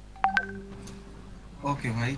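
WhatsApp Web new-message notification chime: two quick electronic notes about a quarter second in, the second higher than the first, with a faint lingering tone after.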